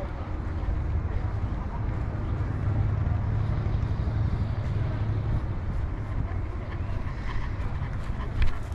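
Outdoor city ambience of a low, steady rumble that swells between about two and five seconds in, with faint voices in the background.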